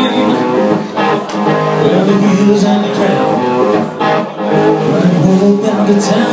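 Live rock band playing a song: electric guitar, bass guitar and a drum kit, with a man singing lead vocals.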